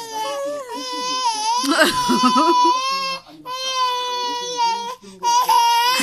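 Baby crying in long, held wails, about three of them with short breaks for breath between.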